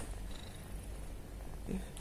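A domestic cat purring steadily.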